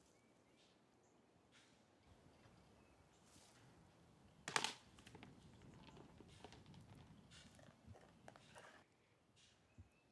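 Near silence: quiet outdoor ambience, broken by one sharp knock about halfway through and a few fainter clicks after it.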